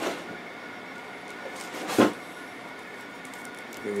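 Plastic packaging handled as a boxed action figure is lifted out: a light click at the start and one sharp plastic clack about two seconds in.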